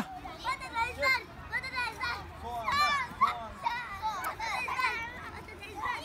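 A group of young children chattering and calling out at play, their high voices overlapping at moderate level.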